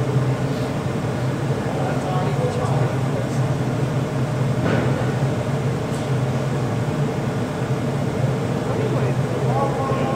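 Steady low drone of a glass-melting furnace and its exhaust hood running, with faint voices in the background and a single light knock about halfway through.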